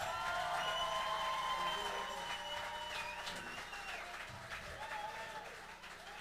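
Audience applauding and cheering, with voices calling out and a long held whoop, slowly fading toward the end.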